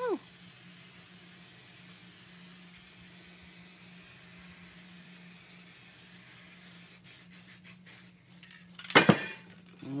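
A faint steady hum, then a few light clicks and a sharp, loud metallic clatter about nine seconds in: a spray-paint can being handled and set down hard on a work table.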